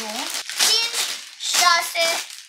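A child speaking in short phrases, with light crinkling of plastic parts bags being handled between the words.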